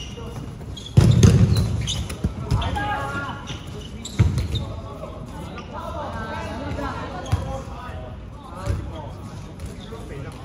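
Dodgeballs thudding during play on a gym court: one loud hit about a second in that rings on briefly in the hall, then lighter thuds around four, seven and nine seconds, with players' voices in between.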